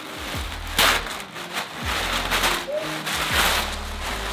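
Tissue paper rustling and crinkling as it is pulled back inside a gift box, in uneven bursts. Under it runs background music with a deep bass beat.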